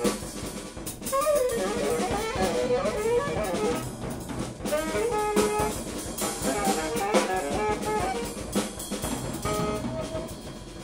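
Tenor saxophone and drum kit playing jazz together: the saxophone runs through quick, wavering lines while the drums and cymbals are struck under it. There is a short lull just under a second in, after which both carry on.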